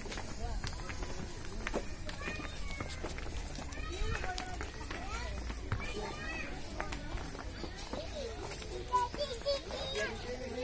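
Crowd of adults and children chattering and calling to one another in overlapping, indistinct voices while walking along a path, over a low steady rumble.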